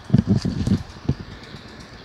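A quick run of dull, low thumps in the first second and one more just after: handling noise from a hand-held camera being carried and moved.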